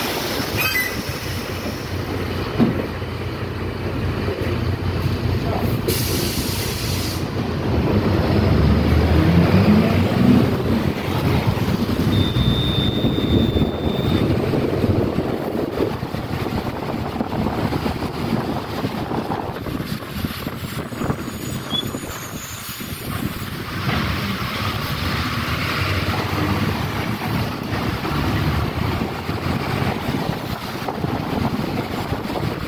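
City bus heard from inside the cabin while driving: the engine runs, the body rattles, and tyres rumble on the road. The engine note climbs as the bus accelerates about eight seconds in. There is a short hiss about six seconds in and a brief high squeal about twelve seconds in.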